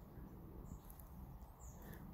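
Quiet outdoor ambience: a low wind rumble on the microphone, with a couple of faint high chirps, one about a second in and one near the end.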